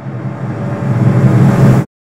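A cinematic riser effect: a dense, rumbling noise that swells steadily louder for nearly two seconds, then cuts off abruptly into silence.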